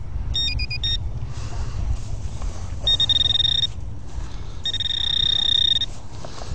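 Handheld metal-detector pinpointer beeping: a quick run of high beeps changing pitch near the start, then two steady high alert tones, the second longer, as it sounds off on a buried metal target.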